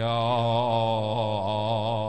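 A man's voice holding one long chanted note with a slight waver, a phrase of a sermon drawn out in a singing style.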